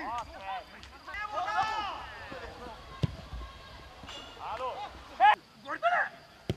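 Footballers shouting to each other across an outdoor pitch in short, loud calls, the loudest just after five seconds. A single dull thud of a football being kicked comes about three seconds in.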